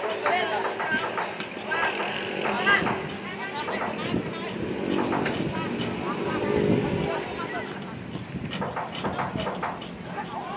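Indistinct shouting from players and people at the pitchside during a youth football match, no clear words, with a few sharp knocks.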